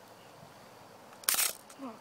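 A single short sharp plastic click and rattle about a second and a quarter in, from handling the plastic BB magazine of a pump-action airsoft pistol while trying to open it.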